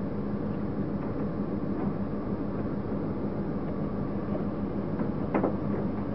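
A vehicle driving along, with a steady engine hum and road noise.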